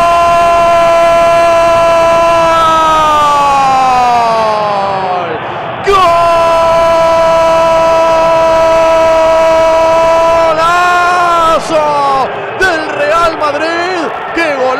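Radio football commentator's long drawn-out goal cry, "¡Gooool!": a loud held shout that slides downward in pitch, then a second long held cry from about six seconds in. Near the end it breaks into shorter excited shouts.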